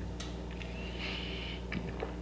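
A person breathing out through the nose in one short, breathy exhale about a second in, just after a sip of whisky, over a steady low room hum. A couple of faint clicks come near the end.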